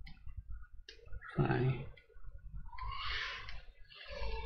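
A few faint computer mouse clicks, with a man's brief low murmur about a second and a half in and a breath around three seconds in.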